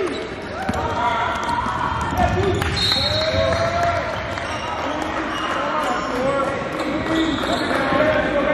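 Basketball game sounds in a gym: a ball bouncing on the hardwood court, sneakers squeaking, and players' shouts, all echoing in the hall.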